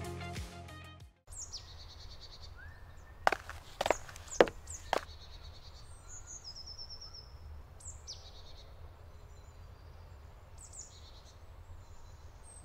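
Music cuts off about a second in, then songbirds singing in a forest, with repeated high chirps and short trills over a steady low background noise. A quick run of about five sharp clicks or knocks comes between about three and five seconds in.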